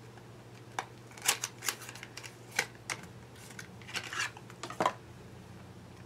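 Small cosmetic packaging being handled: scattered light clicks and taps, about a dozen, spread through the few seconds.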